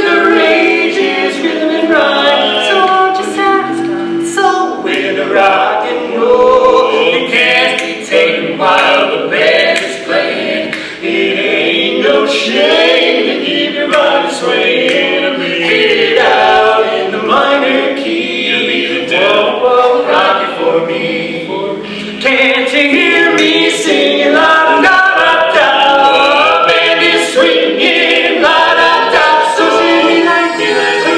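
Male barbershop quartet singing a cappella in close four-part harmony, loud and continuous with brief dips between phrases.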